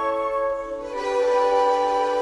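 Orchestral light music, strings holding sustained chords. The sound softens briefly and then moves to a new chord about a second in.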